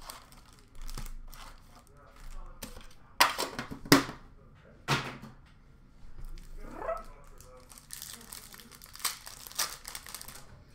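Foil trading-card pack wrappers crinkling and being torn open by hand, with denser crinkling over the last couple of seconds. A few sharp knocks come about three to five seconds in.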